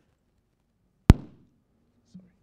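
A single sharp thump on a microphone about halfway through, dying away within half a second: the podium's gooseneck microphone being grabbed and moved by hand.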